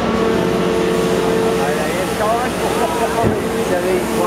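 Steady mechanical hum of running machinery, holding one even tone, with people's voices talking over it from about halfway through.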